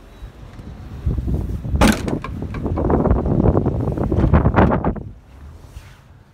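Handling noise around a car's boot and rear door: a sharp knock nearly two seconds in, then about three seconds of clattering and rustling that stops suddenly about five seconds in.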